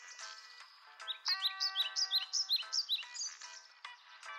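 Birds chirping: a quick run of short, high, sweeping notes in the middle, over a thin steady tone.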